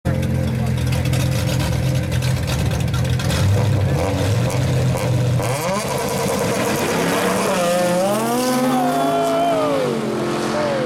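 Turbocharged four-cylinder engine of a Mitsubishi Lancer Evolution held at a steady low drone on the drag-strip start line. About five and a half seconds in it launches and accelerates hard away, its pitch climbing and dropping several times through the gears.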